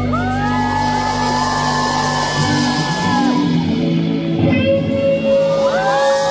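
A rock band playing live, with electric bass and electric guitar. Long held notes slide up into pitch just after the start and again near the end.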